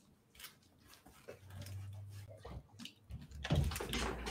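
Faint rustling and light knocks of a plush hat being pulled down over headphones, growing louder near the end.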